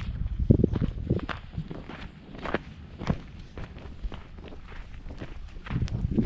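Footsteps in sandals on dry, sandy ground, a step about every half second, over a low rumble.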